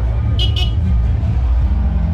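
Steady low rumble of street-market ambience, with two short high chirps about half a second in.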